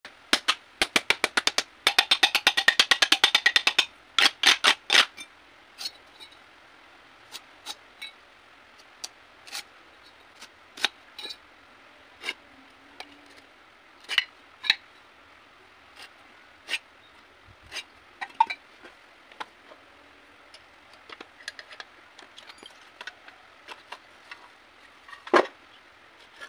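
A hand tool tapping on the metal mold of a cast concrete ventilation block to loosen it: sharp taps about four a second, then a fast rattling run of taps and a few harder strikes in the first five seconds. After that come scattered light clicks and knocks as the mold's inner pieces are worked loose and lifted out.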